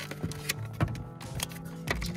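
Clear plastic blister packaging and a bagged action figure being handled and pulled apart, giving a few sharp plastic clicks and crackles, over steady background music.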